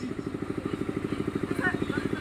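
A small engine running steadily with a rapid, even low beat of about twelve pulses a second.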